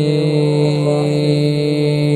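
A man reciting the Quran in the slow, melodic mujawwad style, holding one long steady note on a single vowel.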